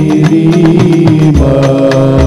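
A group of male voices chanting a shalawat in unison, holding long notes that shift pitch about a second and a half in, over regular beats of hand-struck frame drums (rebana).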